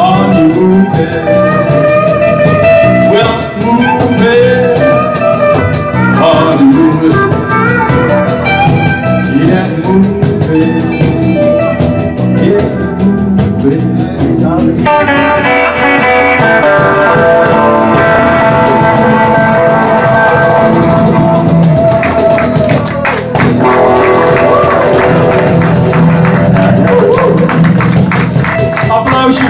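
Live rock and roll band playing an instrumental break: electric guitar over bass guitar. The texture of the playing changes about halfway through.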